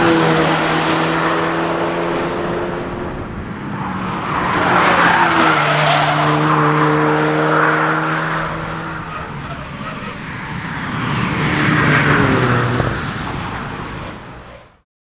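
Volkswagen Golf R wagon's turbocharged four-cylinder engine pulling hard on a race track, with tyre and road noise. The sound swells three times as the car passes and draws away, and the engine note holds steady, then steps in pitch at gear changes.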